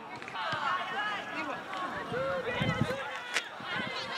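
Distant shouts and calls from football players and onlookers across an open pitch, several voices overlapping, with one sharp knock about three and a half seconds in.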